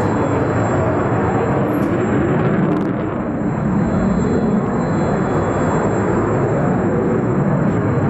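Jet noise from a JF-17 Thunder fighter's Klimov RD-93 afterburning turbofan in flight, loud and steady with a brief slight dip about three seconds in.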